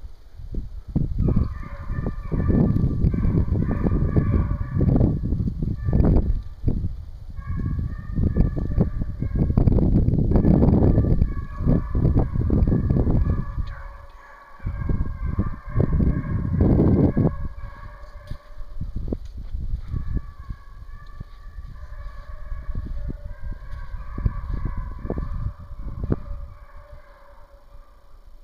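A pack of Walker hounds baying in long, drawn-out, overlapping bawls while running a deer on a hot track. A loud, irregular low rumble on the microphone runs under the baying through the first half or so and then eases off.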